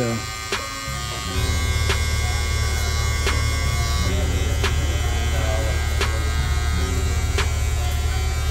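Cordless hair trimmer buzzing steadily as it cuts along the temple hairline; the buzz grows louder about a second in.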